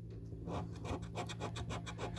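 A coin scratching the silver coating off a paper scratch card in quick repeated strokes, about seven a second, starting about half a second in.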